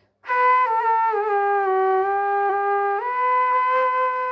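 Bamboo bansuri flute playing a slow, smooth phrase. A held note steps down through a few lower notes, then rises back to the first note about three seconds in and is held.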